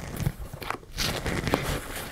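Rustling and scuffing of a fabric bag as hands open and press a pocket, with a couple of light clicks.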